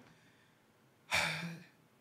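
A man sighing: a single breathy exhale about a second in, fading out over about half a second.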